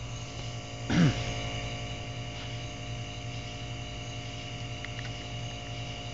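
Steady electrical mains hum from electric hot-plate burners running, a low buzz with several steady tones. A man clears his throat once about a second in.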